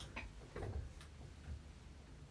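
A few faint, light ticks, about four in two seconds, over quiet room noise.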